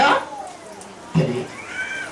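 A man's voice over a microphone: a drawn-out word falling in pitch at the start, a short pause, then a brief utterance about a second in and a faint high arching sound near the end.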